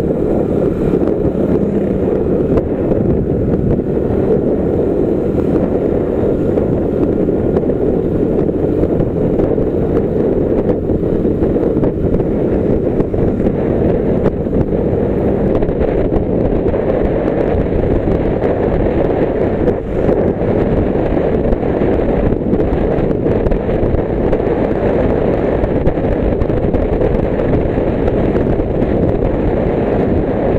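Steady roar of wind buffeting the camera microphone on a motorcycle riding at road speed, with engine and tyre noise running underneath.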